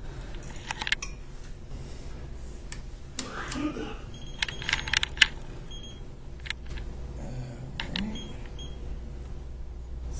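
Scattered clicks and light taps from handling a Leica 1205 total station and its keypad, with a cluster of them in the middle, over a low steady hum.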